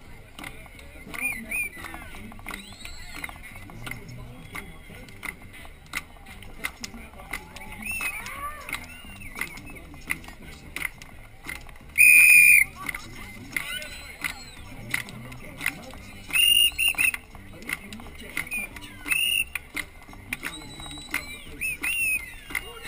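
Parade crowd noise of voices and shouts, broken by loud, high-pitched whistle blasts. The loudest is about halfway through and lasts about half a second, with shorter blasts a few seconds later.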